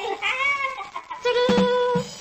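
FM radio station ID jingle: a short meow-like cry that rises and falls, then a steady held note for the last three-quarters of a second.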